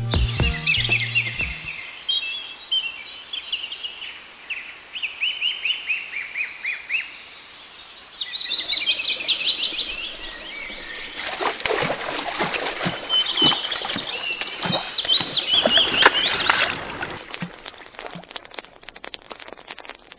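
Birds chirping, many short repeated calls throughout. From about halfway, a splashing, crackling rush of water joins in and stops a few seconds before the end.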